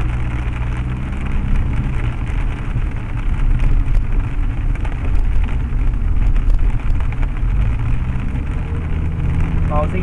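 Car driving on a rain-soaked road, heard from inside the cabin: a steady engine and road drone with the hiss of tyres on wet pavement, louder through the middle.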